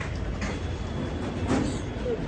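Steady low rumble of passing road or rail traffic, with one brief sharp sound about one and a half seconds in.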